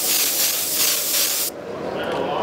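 Airbrush spraying paint onto a T-shirt: a steady hiss of air and paint that swells and eases slightly with the strokes, then stops suddenly about one and a half seconds in.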